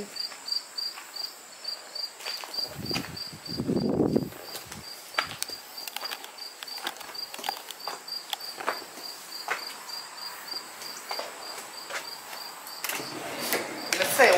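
An insect, most likely a cricket, chirping steadily at about three chirps a second, with a low rumble about three seconds in and scattered short clicks of footsteps.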